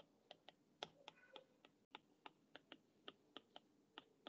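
Faint clicks of a stylus tip tapping on a tablet's glass screen during handwriting, about four a second.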